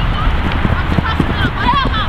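Wind rumbling on the microphone of an outdoor soccer game, with distant shouts from players and spectators and a few dull thumps.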